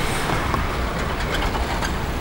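Steady outdoor traffic noise: an even rumble and hiss with no distinct events.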